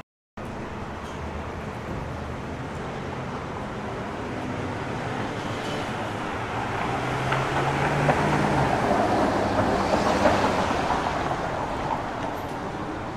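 Street traffic: a steady wash of road noise that slowly swells as a vehicle passes, loudest near the end, with a low engine hum partway through.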